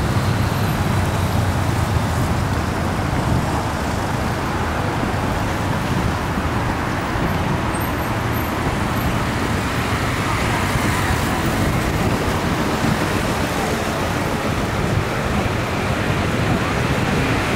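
Steady road traffic noise: a continuous rumble of passing cars, with no single vehicle standing out.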